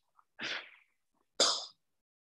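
Two short breathy puffs of noise from a person, one about half a second in and a second, sharper one about a second later.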